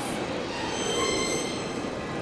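Cartoon wind sound effect: a strong, steady rushing gust with thin, high whistling tones over it through the middle.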